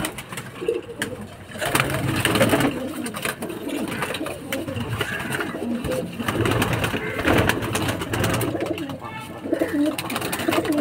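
A loft full of racing pigeons cooing together, with scattered sharp clicks throughout.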